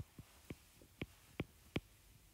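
A stylus tip tapping and clicking on a tablet's glass screen during handwriting: about six faint, sharp clicks at uneven intervals.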